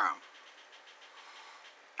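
Faint, light scratchy ticking of a homopolar motor's copper wire spinning around the battery, its loose ends rubbing on the magnets, over a quiet hiss.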